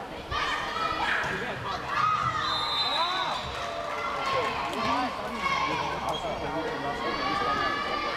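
Girls' volleyball players and spectators shouting and calling in an echoing indoor sports hall during a rally, voices overlapping throughout. A high steady tone sounds for about a second around three seconds in.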